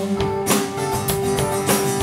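Live folk band music with no vocals: a strummed steel-string acoustic guitar over a steady held note.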